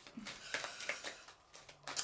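Faint rustling and light clicks of a deck of oracle cards being handled, a string of small taps spread through the first second and a half.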